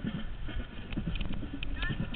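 Low wind rumble and irregular knocks on a trumpet-mounted camera as the horn is carried and handled, with brief fragments of voices in the distance.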